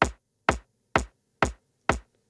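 A lone electronic house kick drum playing four-on-the-floor, about two evenly spaced hits a second, five hits in all, with no other instruments.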